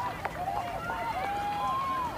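Several voices of players and spectators shouting and calling out across the pitch, reacting to a shot that has just come off the crossbar.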